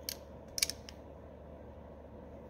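Small open-end wrench on the hex bolt of a snow blower carburetor's float bowl as the bolt is snugged down: a few light metallic clicks within the first second.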